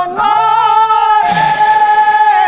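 Devotional singing: a voice holds a long sung note. About a second in, hand cymbals clash, and their ringing carries on under the held singing.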